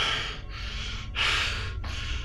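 A frightened man breathing hard in sharp, hissy gasps, a breath about every second, between panicked outbursts.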